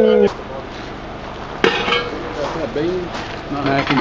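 A single sharp metallic clank about a second and a half in, from a cast-iron Dutch oven lid being handled. A drawn-out voice stops just after the start, and faint talk follows in the second half.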